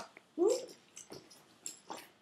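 A brief vocal sound that rises and falls in pitch about half a second in, followed by a few soft clicks and rustles of leather handbags being handled and pulled out from one another.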